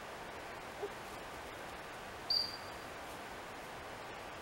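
One short, high, clear whistle about halfway through, held on a single pitch for under half a second, over a steady outdoor hiss.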